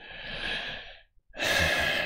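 A man breathing out twice in a thinking pause, the first breath softer and the second, about a second and a half in, louder and sigh-like.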